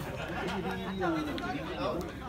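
Voices talking: chatter of people speaking over one another.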